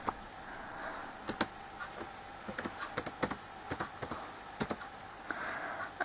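Typing on a computer keyboard: scattered, irregular key clicks, fairly faint.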